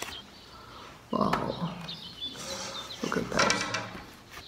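Cardboard backing of a picture frame and a paper print being handled: a quiet first second, then a scraping, rustling stretch starting about a second in and another burst of handling noise a little after three seconds as the print comes out.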